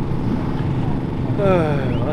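Motorcycle engines running steadily in the background at a motocross track, with a man's voice starting about one and a half seconds in.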